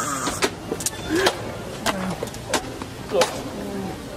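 Indistinct chatter of several voices, with scattered knocks and handling noise.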